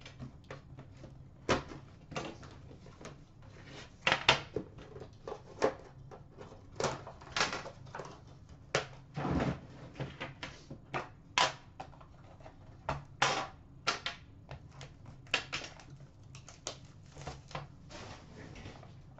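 Hands unwrapping and opening a metal Upper Deck The Cup hockey card tin: an irregular run of knocks, clicks and short rustling scrapes as the tin and its packaging are handled and the lid comes off.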